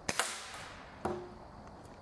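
A single sharp shot from a Beeman pellet rifle, with a short ringing tail. A fainter click with a brief ring follows about a second later.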